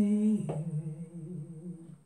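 A woman humming a worship song: one long held note that steps down in pitch about half a second in, then fades away near the end.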